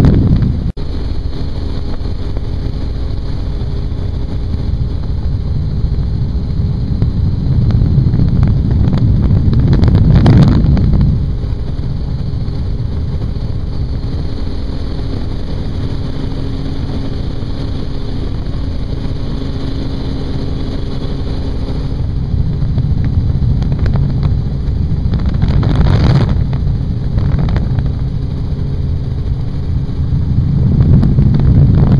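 Helicopter in flight with its doors off: the steady drone of rotor and engine, with wind rushing through the open cabin onto the microphone. The rush swells louder twice, about a third of the way in and near the end.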